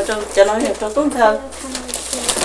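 People's voices talking and exclaiming, words not made out.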